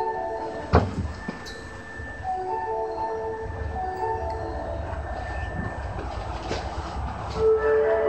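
A platform chime melody of short marimba-like notes, played in phrases with pauses between, over the low rumble of a subway train standing at the station. A single sharp knock sounds about a second in.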